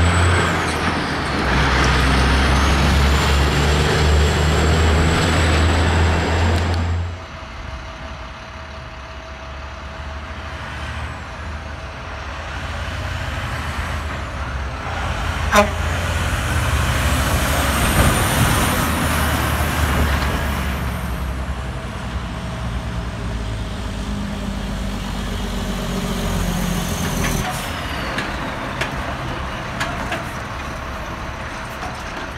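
Heavy diesel trucks pulling across a street crossing one after another: a tri-axle dump truck's engine runs loud for the first seven seconds or so, then drops off suddenly. A second dump truck and a tractor-trailer follow, with a high whistle that rises and falls around the middle and a sharp click about fifteen seconds in.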